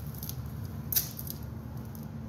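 Steady low background hum with a single light click about a second in and a few faint ticks near the start.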